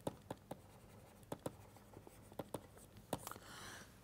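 Faint taps and scratches of a stylus writing a word on a tablet: a scatter of short clicks, then a brief longer scratch near the end as the word is underlined.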